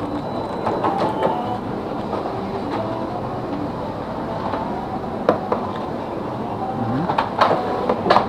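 Steady background din of a busy convenience store checkout, with faint distant voices early on and a few sharp clicks and knocks in the second half.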